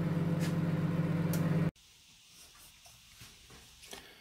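Steady electrical hum from a kitchen appliance, cutting off abruptly a little under two seconds in, followed by faint room tone with a few light clicks.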